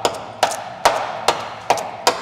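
Screwdriver tip jabbed repeatedly against rusted steel sill metal, about two sharp knocks a second, each with a brief scraping rasp. The corrosion is being probed to see how much sound metal is left.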